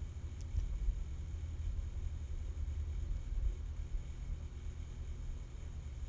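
Low steady background rumble, with a couple of faint clicks about half a second and a second in.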